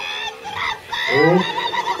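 Excited, high-pitched shouting from several people, with voices gliding up and down in pitch as they cheer the riders on.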